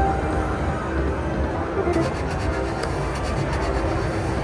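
Slot machine game music over a steady casino din, with a quick run of ticks about halfway through as the $720 bonus win is counted onto the credit meter.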